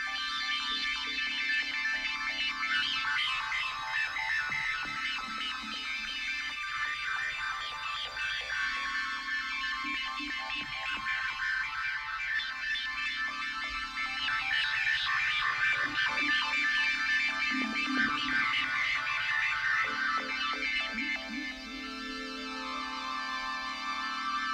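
Electronic instrumental music: a slow bass line stepping between two low notes every couple of seconds under sustained, wavering synthesizer-like tones higher up. It grows somewhat louder in the middle and eases off a few seconds before the end.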